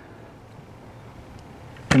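Faint steady background noise with no distinct sound in it. Near the end a short sharp click comes just before the voice starts again.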